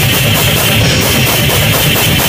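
Electric guitar and drum kit playing loud, fast extreme metal together, a steady wall of distorted guitar over rapid drumming.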